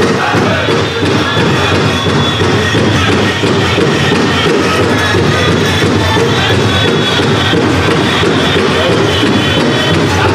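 Powwow drum group singing in unison over a steady, loud big-drum beat for a jingle dress dance, with the metal cones of the dancers' jingle dresses rattling along.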